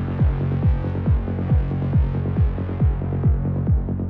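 Psytrance intro: a four-on-the-floor kick drum at about two and a third beats a second, each kick dropping in pitch. Beneath the kicks is a steady low synth drone, with a rolling bass pulsing between them.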